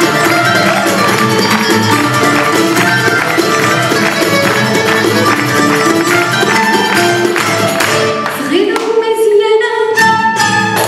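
Live Tunisian ensemble music: violin, qanun and oud play a melodic instrumental line over frame-drum/tambourine strokes. Near the end the singer's voice enters with a rising, long-held note.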